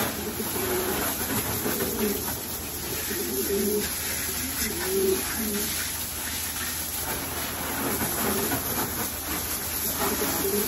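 Domestic pigeons cooing over and over over the steady hiss of a garden hose spraying water into their cages.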